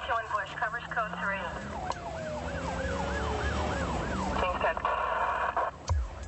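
Police car sirens: a fast yelping sweep, then a slower up-and-down yelp of about three sweeps a second while a second siren tone winds down, ending in a rapid warbling burst.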